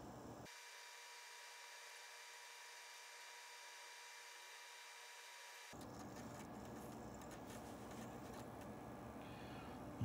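Near silence: faint room tone. Partway through, the low hum drops out for about five seconds, leaving only faint hiss and thin steady tones.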